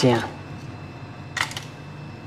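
One sharp click about one and a half seconds in, as a small glass of green cardamom pods is handled, over a steady low hum.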